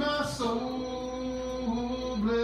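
A man singing a slow hymn, holding one long, steady note that dips slightly near the end.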